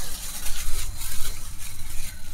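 Thin clear plastic bag crinkling and rustling as it is handled and pulled open, over a steady low rumble.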